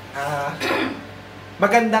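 Speech in a small room: a person talking, with a brief throat-clearing sound just over half a second in, then a short spoken 'oo' near the end.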